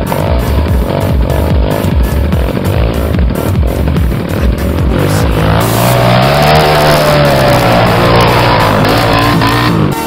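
Electronic dance music with a steady beat. About halfway through, a dirt bike's engine revs loudly at close range, rising and falling in pitch, and cuts off just before the end.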